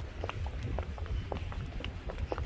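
Footsteps of several people walking on pavement: irregular short taps over a low, uneven rumble.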